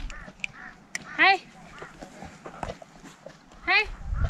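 Two short, loud animal calls rising in pitch, about two and a half seconds apart, over faint voices.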